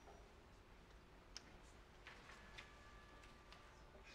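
Near silence in a large hall: room tone with a few faint scattered clicks, and two faint steady tones held briefly in the second half.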